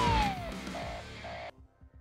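TV news transition sting: a siren-like tone sliding down in pitch over a deep bass hit, then two short beeps, cutting off suddenly about one and a half seconds in.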